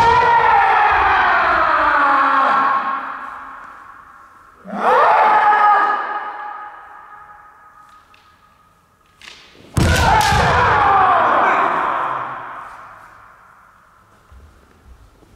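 Kendo kiai: three long drawn-out shouts, each lasting two to three seconds with the pitch sliding down, at the start, about five seconds in, and about ten seconds in. The third, and the one just at the start, come with a sharp crack of a strike landing as the attacker stamps forward on the wooden floor, echoing in a large hall.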